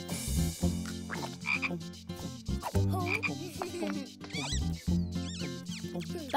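Cartoon frogs croaking, low and repeated, with a few short whistling pitch glides a little past the middle.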